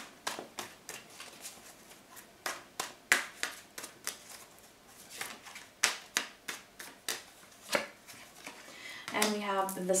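A tarot deck shuffled by hand: a long run of irregular, sharp card flicks and slaps, several louder than the rest.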